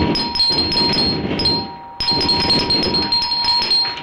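Electronic musical doorbell ringing twice: a quick run of high chiming notes over a held tone, the second ring starting about two seconds in.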